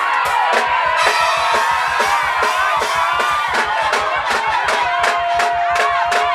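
Live mugithi band music: electric guitar over a fast, steady drum beat.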